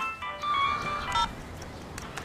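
A mobile phone ringtone or alarm: a short melody of high electronic notes that stops about a second in.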